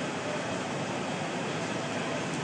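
Steady, even whir of HP ProLiant Gen8 rack servers' cooling fans running, with no distinct events.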